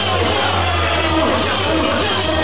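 Hardcore dance music played loud over a club sound system, with a sustained low bass note.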